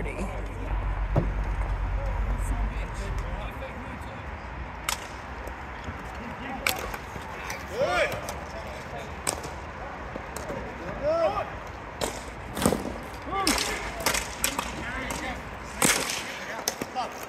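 Hockey sticks clacking and cracking against the ball and the plastic tile court during play, a scatter of sharp knocks several seconds apart, with players' short shouts in between.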